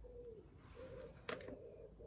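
Faint cooing of a dove: a few short, low, even coos. A single sharp click comes about a second and a quarter in.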